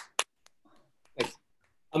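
A few scattered hand claps coming over a video call: sharp claps near the start and another just over a second in.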